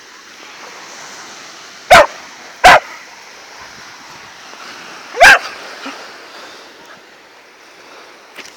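A sprocker spaniel barking three times, loud and sharp: two barks close together about two seconds in, then a third a few seconds later.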